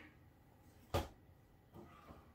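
A single sharp knock about halfway through, from an African grey parrot moving about its cardboard box among paper scraps and plastic toy blocks, with faint scattered rustles around it.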